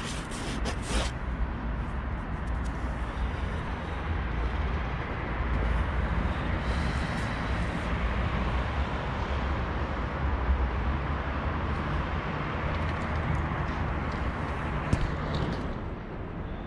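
Outdoor street ambience: wind rumbling on the microphone over the hum of traffic below. Fabric rustles sharply for the first second as the cover is handled.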